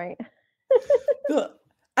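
A woman's voice: a quick "right", then about a second of short, pitched vocal sounds with no words, such as a laugh or an assenting noise.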